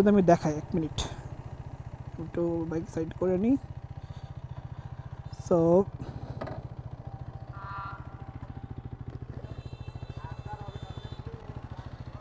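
Hero Karizma XMR 210's single-cylinder engine running at idle, a steady, even, fast pulse, with a few short bits of voice over it.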